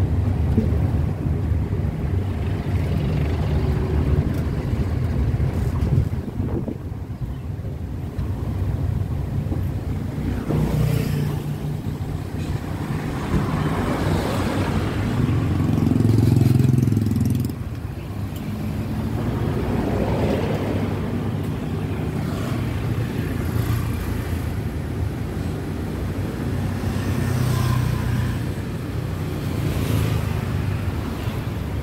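Road traffic heard from a moving vehicle on a busy city street: car and motorbike engines running with tyre noise. A motorbike passing close alongside makes the loudest moment, about sixteen seconds in.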